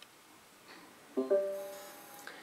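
Smart speaker's short confirmation chime of two quick pitched notes about a second in, ringing on and fading: Alexa acknowledging a voice command to switch on a computer.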